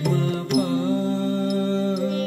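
Indian classical music in raga Des: after a sharp percussive stroke about half a second in, a voice holds one long, steady note.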